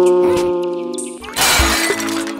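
Background music, then about a second and a half in a loud glass-shattering crash lasting about half a second as the car tips onto its roof.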